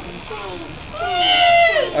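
A child's high-pitched excited squeal, held for nearly a second before falling off in pitch, over quieter classroom chatter.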